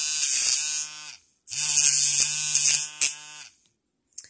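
BellaHoot electric nail art drill running with its emery shaping bit against an acrylic nail tip, giving a steady motor whir with a high grinding hiss. It cuts out about a second in, starts again half a second later and stops about three and a half seconds in.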